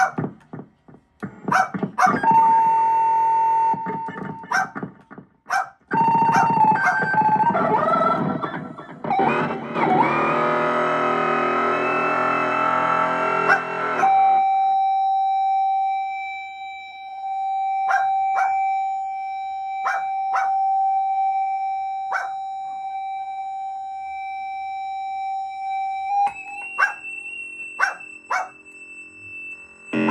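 Circuit-bent Casio SK-1 sampling keyboard played through a small amplifier. It starts with glitchy, stuttering chopped sounds for several seconds, then builds to a dense, buzzing chord-like wash. About halfway through it cuts to a single steady high tone, held for about twelve seconds with scattered clicks over it, and the tone shifts slightly near the end.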